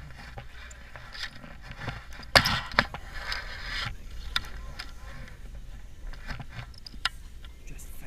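Rustling and knocks of paragliding harness gear and a hand-held camera pole being moved, over a steady low wind rumble on the microphone. A loud scraping burst comes about two and a half seconds in, with a few sharp clicks later.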